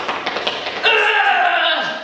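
Quick taps of trainers on a hard floor during fast toe taps. About a second in, a voice lets out a drawn-out call that falls in pitch.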